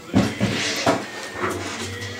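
A few short clicks and smacks from a baby being spoon-fed, about four in two seconds.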